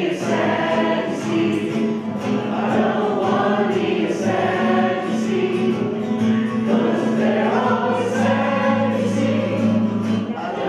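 A group of voices singing a worship song together, accompanied by an acoustic guitar.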